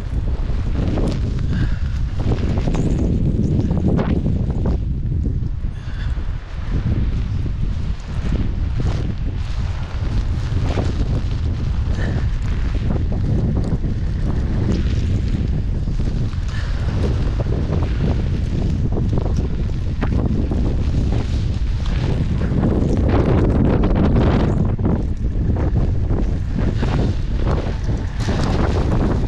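Strong wind buffeting the camera microphone: a loud, steady, low rumble with uneven gusts.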